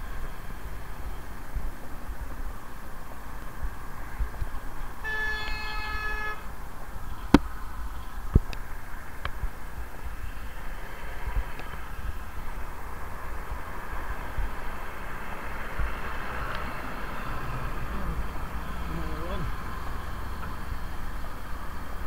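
A private hire car's horn sounded once, a single steady blast of about a second, over steady wind and road noise from riding. Two sharp knocks follow a second or so later, about a second apart.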